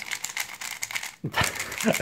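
Plastic pieces of an MsCUBE MS3L 3x3 speedcube rattling and clicking in quick succession as it is turned, with its springs on the loosest tension setting. A short laugh comes at the start, and a voice sound comes near the end.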